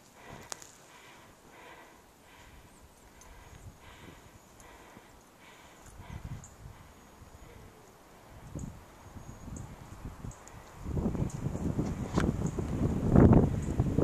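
Footsteps crunching through deep powder snow, faint and rhythmic at first, then much louder and closer in the last few seconds.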